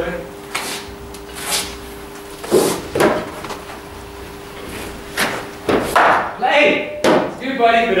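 A series of sharp knocks and thuds in indoor cricket nets: a ball thrown from a handheld ball thrower, struck by the bat and hitting the matting and netting. The loudest knocks come about two and a half to three seconds in, over a faint steady hum.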